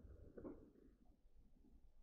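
Near silence: room tone with faint chewing, one soft mouth noise a little more distinct about half a second in.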